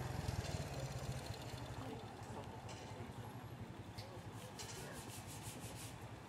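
Faint roadside street ambience: a low, rapidly fluttering rumble that eases after the first second, with a few soft clicks.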